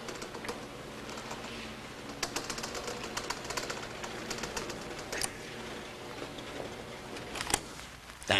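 Sliding chalkboard panels being pushed up and down in their frame, rattling with a rapid run of clicks about two seconds in and a few single knocks later.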